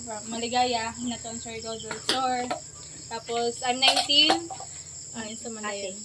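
A woman talking over a steady, high-pitched drone of crickets.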